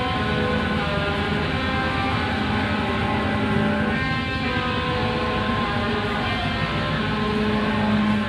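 Live band playing: electric guitar and drum kit in a dense, steady wall of sound.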